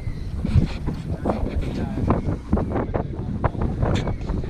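Wind buffeting the GoPro's microphone in a low, uneven rumble, with scattered knocks and taps throughout.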